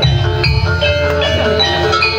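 Javanese gamelan music of the kind that accompanies kuda lumping and reog: bronze metallophones strike a repeating pattern of ringing notes over a steady low drum bed.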